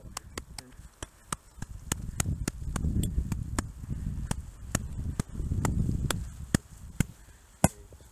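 A series of sharp taps from a gloved hand striking a snow shovel blade laid on top of an isolated snow column during an extended column test, loading the snowpack until the weak surface hoar layer fractures. The loudest tap comes near the end. A low rumble of wind on the microphone swells twice.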